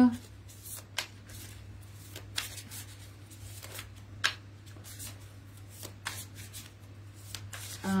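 Tarot cards being shuffled and handled by hand: a string of irregular soft slaps and clicks.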